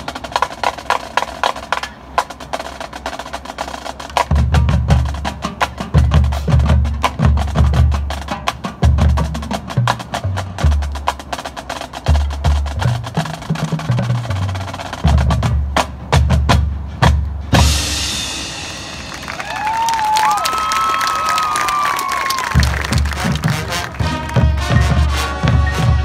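Marching band percussion section playing a drum feature: rapid snare strokes and rolls, with heavy bass drum hits joining a few seconds in. About two-thirds of the way through, the low drums drop out under a ringing cymbal wash with some brief gliding tones, and the bass drums come back in near the end.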